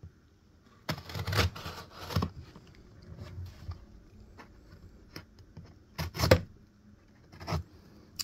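Knife blade slicing and scraping through duct tape on a cardboard parcel: a series of short rasping cuts and rips, the loudest pair about six seconds in.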